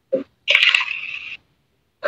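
A person's voice: a brief vocal sound, then a breathy hiss lasting just under a second.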